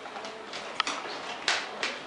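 A dog's claws clicking on a hardwood floor as it walks, a few separate sharp clicks.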